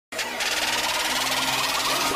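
Electronic intro sound effect: a steady buzzing drone with a hiss over it, starting abruptly, leading into electronic music.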